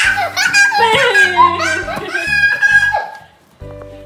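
A young child squealing and laughing loudly, with others laughing along, for about three seconds, then dying away; background music with a steady beat plays underneath.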